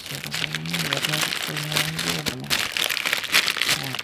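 Plastic bread packet crinkling and a ciabatta bun's crust crackling as it is torn apart by hand, many small sharp crackles throughout. A low voice sounds underneath.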